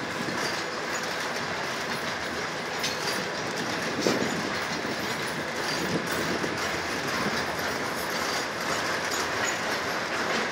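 Freight train of open-top hopper cars rolling steadily past: continuous rumble and rattle of steel wheels on rail, with scattered knocks from the wheels and couplings, the sharpest about four seconds in.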